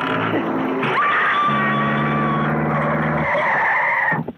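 Horror film score from a soundtrack excerpt: low stepping notes, then a high, shrill held tone entering about a second in over a low sustained chord that drops out a little after three seconds.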